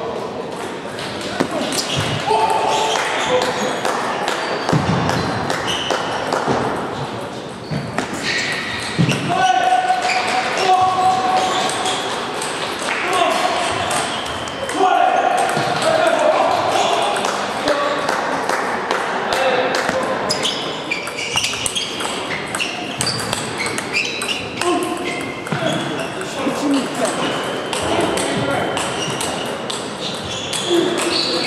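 Table tennis play: the celluloid-type plastic ball clicking sharply on bats and table in repeated rallies, over a steady murmur of voices in a large hall.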